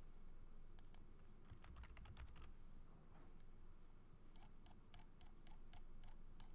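Faint typing on a computer keyboard: two short runs of keystroke clicks, one about a second and a half in and another near the end.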